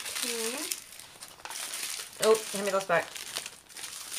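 Small plastic baggies of diamond-painting resin drills crinkling as they are picked up and handled, with a few brief words spoken.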